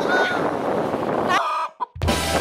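Chicken clucking in short, hooked calls over wind noise on the microphone; the sound cuts out briefly near the end.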